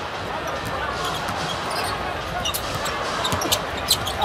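Steady crowd murmur in a basketball arena, with a ball being dribbled on the hardwood court and a few short, sharp squeaks and knocks, mostly in the second half.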